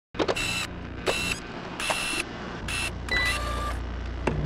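Sound effects for an animated security camera: four short mechanical whirring bursts, each led by a quick swish, then a few short electronic beeps a little after three seconds in. A low hum comes in about halfway.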